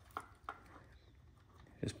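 Two faint, short clicks within the first half second as small plastic e-bike wiring connectors are handled, then quiet room tone.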